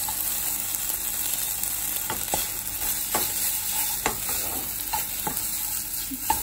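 Vegetables sizzling in a hot non-stick wok while a spatula stirs and scrapes them, with several sharp taps of the spatula against the pan.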